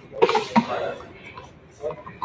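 A short, sharp vocal burst about a quarter second in, fading within a second, then a brief indistinct voice near the end.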